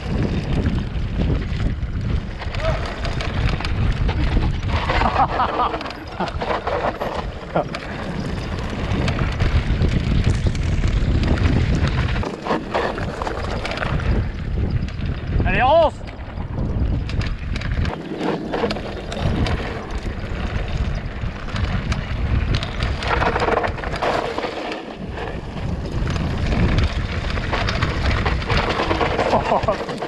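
Wind buffeting the microphone and a mountain bike's tyres rolling over a bumpy dirt trail during a fast downhill run, with the bike rattling.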